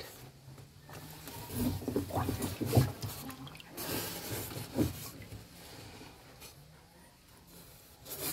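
Hands splashing and sloshing water in a shallow concrete tub while grabbing at small snakehead fish among wet leaves, in short irregular bursts, loudest about three and five seconds in.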